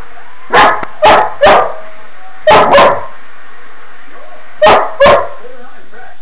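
A puppy barking in short, loud barks: three quick barks, a pause, then two, then two more, seven in all.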